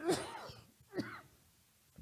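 A man clears his throat twice: a louder one at the start, then a shorter one about a second in.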